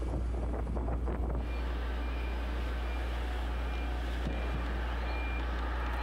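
A heavy vehicle's backup alarm beeps faintly about once a second over a steady low rumble of outdoor worksite noise. The beeping begins a little over a second in.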